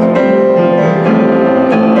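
Youth choir singing a gospel song with piano accompaniment, the piano to the fore, with held notes that change in steps.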